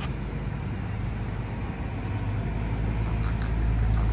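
Road traffic on the adjacent bridge: a steady low rumble that grows louder near the end as a vehicle passes.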